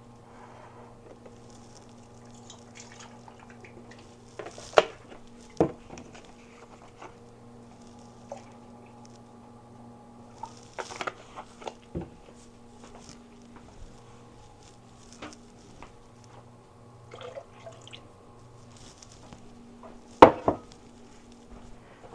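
Quiet kitchen room tone with a steady low hum, broken by scattered knocks and clinks of kitchen things being handled and set down; the sharpest knock comes near the end.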